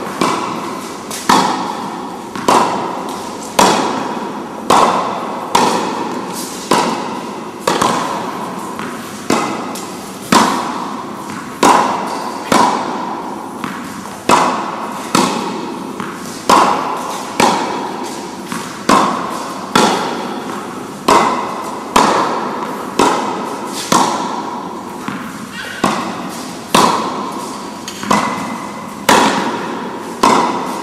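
Tennis ball being struck with rackets in a steady rally, a sharp hit about once a second. Each hit is followed by a long fading echo.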